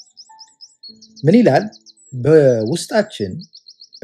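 A small bird chirping in quick, even runs of short high notes, about six a second, once near the start and again in the second half.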